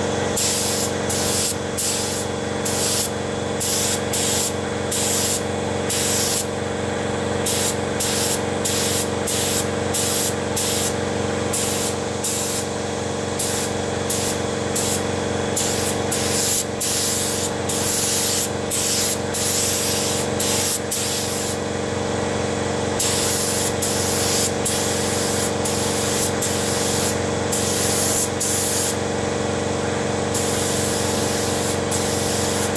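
Air paint spray gun hissing in short on-off bursts, about once or twice a second, with longer passes near the end, over a steady low hum.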